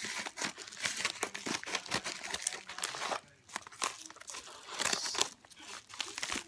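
A yellow padded mailer being cut open with scissors and handled, its paper crinkling and rustling. There is a short lull a little after three seconds in before the rustling starts again.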